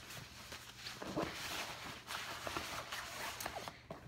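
Fabric rustling as a padded changing pad is folded and a nylon diaper bag is handled, with a few light knocks about a second in.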